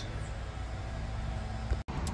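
Low, steady outdoor background rumble with no distinct event. The sound cuts out for an instant near the end.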